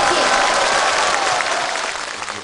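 Studio audience applauding, the clapping easing off slightly near the end.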